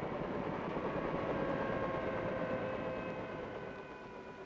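Helicopter running: a steady engine and rotor noise with a faint whine, gradually fading and dropping slightly in pitch toward the end.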